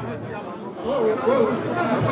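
Speech only: background chatter of several people talking, with a voice coming through more clearly about a second in.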